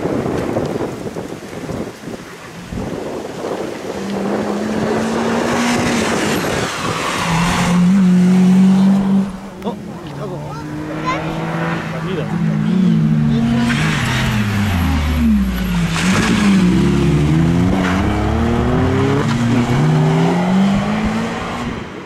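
Mazda Demio rally car driven hard through a stage: the engine note climbs and drops again and again through gear changes and lifts for corners, with quick up-and-down sweeps in the second half, over tyre and road noise.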